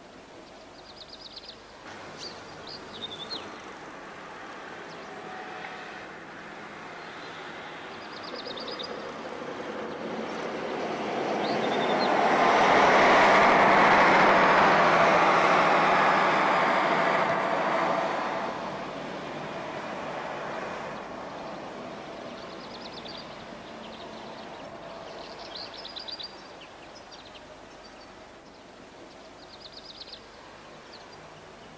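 A vehicle passes by: a broad rushing noise swells over several seconds to a peak near the middle and then fades away. Birds chirp before and after it.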